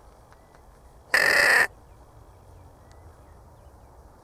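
A single loud, harsh crow caw lasting about half a second, about a second in.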